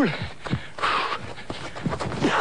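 A man breathing hard, with a short forceful breath about a second in, as he sets off on a jump.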